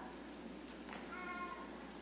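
A young child's voice: one short, high, held call about a second in, lasting about half a second, heard faintly in a large room.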